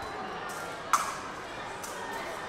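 Épée blades tapping together once, a sharp metallic click about a second in, over the steady murmur of a large hall.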